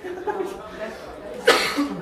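Quiet talk among a small group, then one loud cough about one and a half seconds in.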